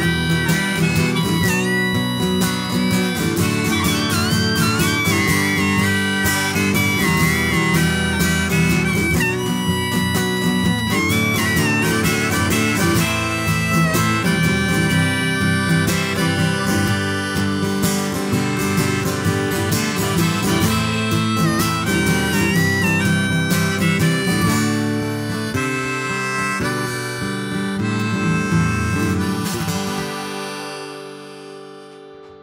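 Harmonica played from a neck rack, with bending notes, over a strummed steel-string acoustic guitar: a folk instrumental outro that eases off near the end as the song closes.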